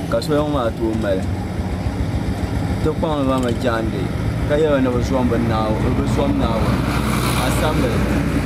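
A voice speaking over the steady low hum of a motor vehicle engine, which grows stronger about five seconds in.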